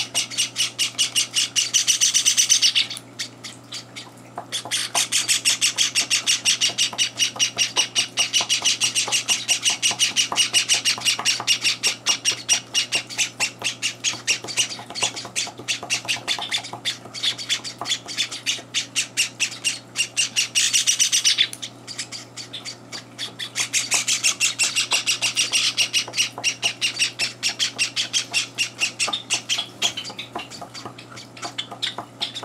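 Young Java sparrows giving rapid, continuous begging cheeps at feeding time, many calls a second in long bouts, with short lulls about three seconds in and again around twenty-two seconds.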